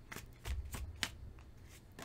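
A tarot deck being shuffled by hand, the cards slipping and tapping against each other in a few soft, sharp clicks, most of them in the first second.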